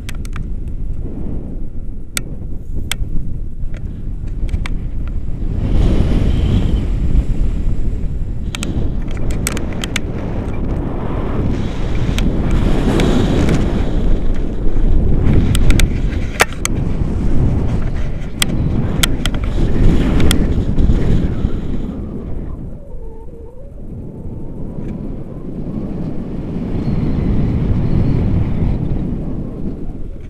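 Wind rushing over an action camera's microphone in flight under a tandem paraglider, swelling and easing and dropping off briefly about three-quarters of the way through, with scattered sharp clicks.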